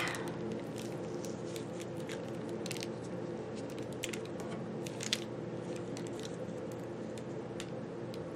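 Light paper-handling sounds: fingers pressing and folding washi tape over the edge of crinkled cheeseburger wrapper paper, giving sparse small ticks and crinkles over a steady low hum.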